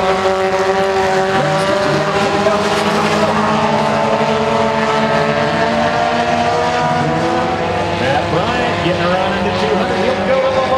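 Several four-cylinder front-wheel-drive mini stock race cars racing, their engines making a loud, steady, layered drone, with pitch sweeping up and down near the end as the cars change speed.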